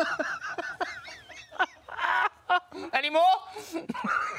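A woman laughing in repeated short bursts of giggling.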